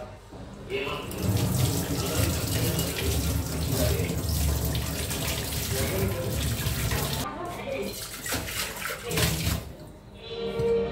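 Water running from a kitchen tap and splashing over hands and a handful of round objects being rinsed under it, into a stainless-steel sink. The flow breaks briefly about seven seconds in, then resumes.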